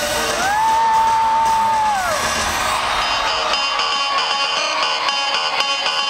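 Loud live band music recorded from the arena floor: a long held note that glides up into pitch and drops away after about two seconds, followed by a driving beat with electric guitar.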